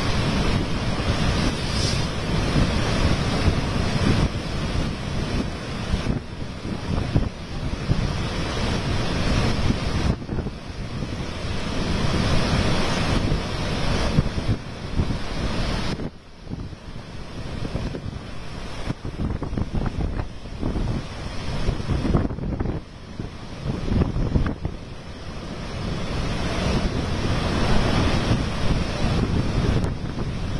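Heavy storm surf crashing and churning on a beach, driven by an approaching cyclone, with strong wind buffeting the microphone. The roar swells and eases with the breaking waves, dropping briefly about halfway through and again a few seconds later.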